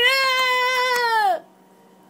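A person's voice drawn out into one long, high wailing vowel, a mock imitation of hurricane wind, sliding down in pitch as it stops about a second and a half in.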